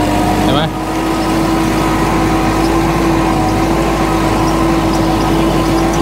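Kubota L5018 tractor's diesel engine running steadily under load as it pulls a disc plough through the soil.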